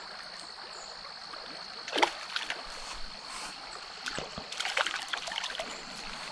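Hooked trout splashing at the surface of a small stream: one short splash about two seconds in, then scattered light splashes and ticks as it is reeled toward the bank.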